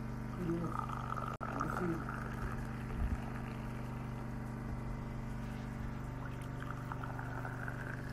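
A steady low machine hum with a fixed pitch, broken by a brief total cut-out about a second and a half in, with a couple of short voice fragments in the first two seconds.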